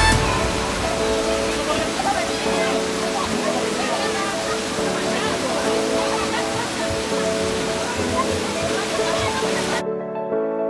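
Water spraying and pouring down from splash-pad fountains onto shallow water, a steady rushing splash, with people's voices mixed in and music underneath. The water sound cuts off suddenly just before the end, leaving only the music.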